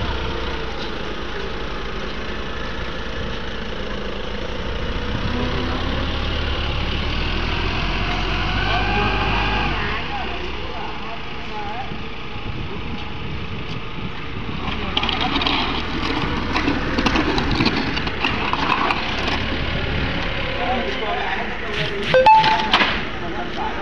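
A TCM forklift's engine running, a steady low rumble that drops away about ten seconds in, with people talking over it. From about fifteen seconds there is a run of knocks and clatter among the voices.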